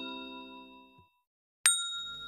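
Chime-like ding sound effects: one ringing on and dying away about a second in, then a brighter ding struck near the end.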